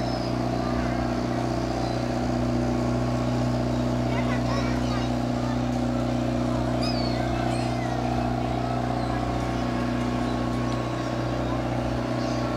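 Steady, unchanging engine drone of a submarine-style ride boat moving through the water, with a few faint chirps high above it.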